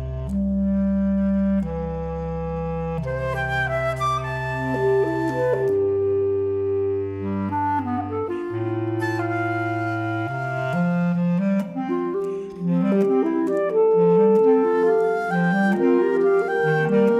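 Chamber ensemble of woodwinds, percussion and piano playing a contemporary piece. Long held low woodwind notes lie under higher clarinet lines, and from about eleven seconds in the music turns to quicker, shorter repeated notes.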